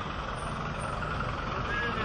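Motor vehicle engine running steadily with a low rumble, as a large vehicle moves along the road.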